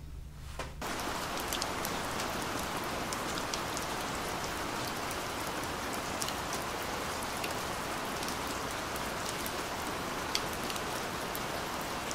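Steady rain starting suddenly about a second in, with scattered drops ticking on window glass.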